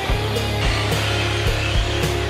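Background music with a steady beat and a sustained low bass note.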